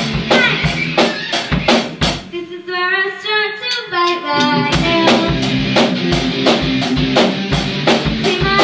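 Kids' rock band playing live: a girl singing over electric guitar and a drum kit with a steady beat. About two seconds in the drums stop, leaving the voice and guitar for a couple of seconds, then the full band comes back in.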